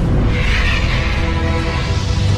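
Music with a heavy, steady low end and a rush of noise that swells about half a second in.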